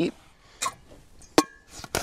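Stainless steel camp pot clinking: a soft tap about half a second in, then a sharper metallic clink that rings briefly, about one and a half seconds in.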